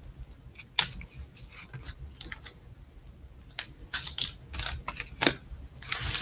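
Handling noise from unboxing vinyl records: irregular light clicks and taps as record jackets and packaging are moved about, a few sharper taps coming later on.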